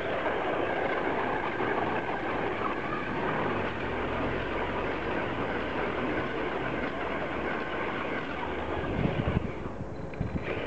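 RC car running hard while drifting, its motor and drivetrain whining steadily as the wheels spin and slide through loose sand. A few brief low thumps come about nine seconds in.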